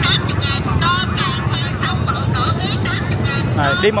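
Motorbike engines running past on a busy street, over a background of people talking.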